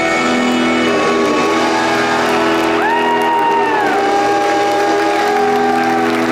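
Live rock band playing sustained chords on guitars and keyboards, with a held high note that slides in about halfway through and bends down a second later, and some audience cheering over the music.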